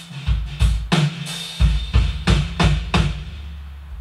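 An acoustic drum kit heard on its own, with no other instruments or vocals: bass drum and snare strokes with cymbal wash, then a quick run of hits about two seconds in. A low drum rings out and fades over the last second.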